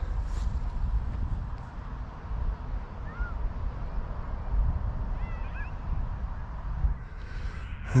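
Wind buffeting the microphone with an uneven low rumble, with a few faint, short bird calls about three seconds in and again near the middle.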